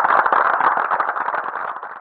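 Audience applauding, the clapping fading out near the end.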